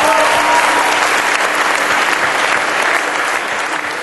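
Audience applauding at the end of a live country-gospel band set, with a voice or two calling out near the start. The applause fades down near the end.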